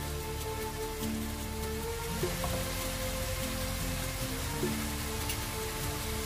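Soft background music of held, sustained notes over a steady fine hiss of mutton frying in chilli paste in the pan.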